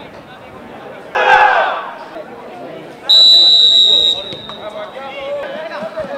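A referee's whistle blows one long steady blast of about a second, signalling the kickoff. Players' voices run throughout, and a man shouts loudly just before the whistle.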